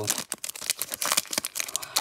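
The foil wrapper of a Donruss Optic basketball card pack being torn open and crinkled by hand: a dense run of crackles and small rips.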